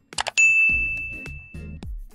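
A click, then a single bright bell-like ding sound effect about a third of a second in, ringing and fading over about a second and a half. It is the notification-style ding of a subscribe-and-bell animation, heard over background music.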